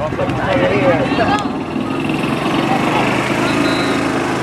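A small engine runs steadily, with voices calling over it in the first second and a half.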